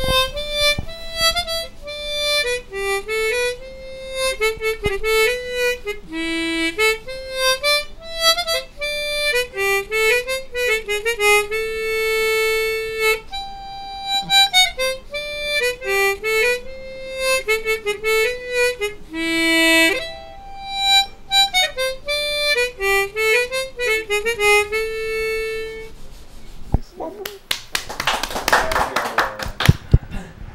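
Harmonica played solo: a slow melody of single notes with a few long held notes, stopping about 26 seconds in, followed by a few seconds of noise near the end.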